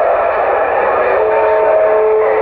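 Uniden Grant XL CB radio's speaker on receive on channel 6: loud, steady static hiss, with thin steady whistling tones, heterodynes from carriers on the channel, coming in about a second in.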